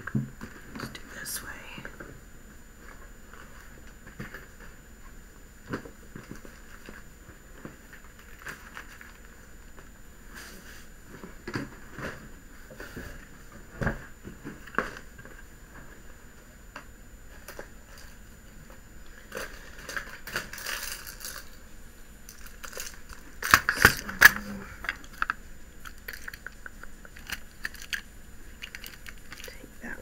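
Scattered clicks, taps and rustles of plastic storage boxes and craft supplies being moved about on a wooden table, with a louder cluster of handling noise about 24 seconds in.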